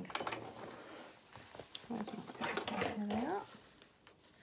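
A domestic sewing machine stitching for a moment and stopping with a few clicks as the seam ends. About two seconds in comes a short voice-like sound that rises in pitch at its end.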